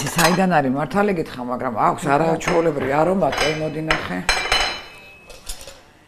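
A woman talking, with clinks and rattles of kitchen containers and utensils being handled.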